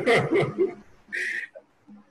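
A man's voice talking for the first half second, then a short breathy puff of sound about a second in.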